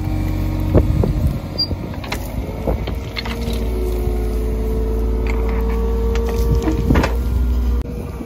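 Mini excavator running under hydraulic load as its bucket digs and scrapes into soil. A steady engine hum and whine, the whine stepping up in pitch about three seconds in, with a few sharp knocks of the steel bucket on dirt and stones.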